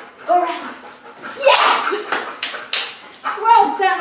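A woman's voice in short bursts, with a quick run of about five sharp slaps in the middle, like hands clapping or patting.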